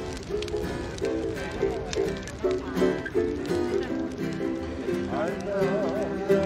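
Ukulele music with quick plucked notes, and a voice heard over it, most clearly near the end.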